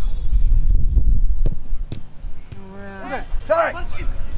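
Players shouting on a football pitch: one call held for a moment, then more short shouts in the second half. Before that, a low rumble of wind on the microphone and two sharp knocks about a second and a half in.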